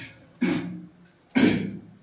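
A person coughing twice, about a second apart: two short, sharp coughs.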